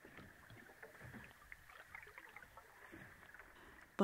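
Faint sea water: irregular small splashes and ticks of water.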